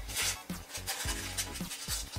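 Background music with a steady beat, over the rustle of paper-backed fusible web and fabric pieces being handled and laid flat on a cutting mat, strongest about a quarter of a second in.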